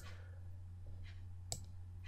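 Two computer mouse button clicks, one at the start and one about a second and a half later, as an edit point is pressed and released, over a faint steady low hum.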